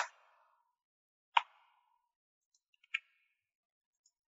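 Three single short clicks about a second and a half apart, from computer controls being pressed while code is entered and run.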